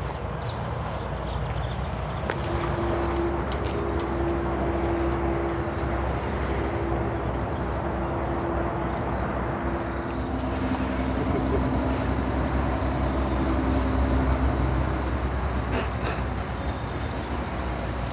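Steady outdoor road-traffic rumble with a vehicle engine drone that holds one pitch for several seconds, then a lower one for a few more. A couple of sharp clicks come near the end.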